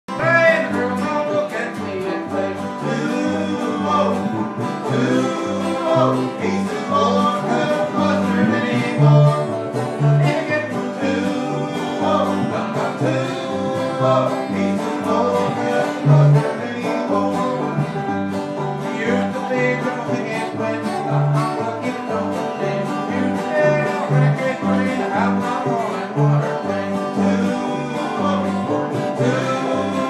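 A live string band playing a bluegrass tune, with guitar and plucked strings over steady, regularly recurring low bass notes.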